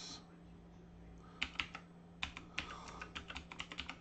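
Computer keyboard keystrokes: three clicks about a second and a half in, then a quicker run of about a dozen through the second half, typing a password at an SSH login prompt.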